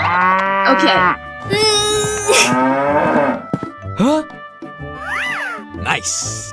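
Cattle mooing: two long moos over the first three seconds, then shorter calls, over background music.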